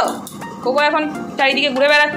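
A Labrador retriever vocalising with a short bark, heard over a background song with a singing voice.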